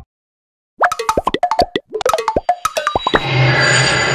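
Intro sound effect: after a brief silence, a quick run of short blips, each dropping sharply in pitch, follows about two seconds of rapid strokes; then a sustained music chord swells in about three seconds in.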